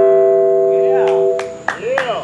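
Electric guitar's final chord ringing out through a small amp, dying away about a second and a half in. Near the end come a few sharp claps and voices.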